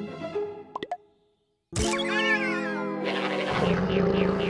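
Cartoon soundtrack: light plucked music with a couple of plop effects, cut off by a short silence, then a loud animal-like cry with a wavering pitch that turns rougher near the end.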